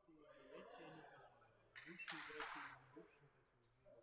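Faint, distant voices of players chatting in a gym hall, with two short hissing bursts of noise close together about two seconds in.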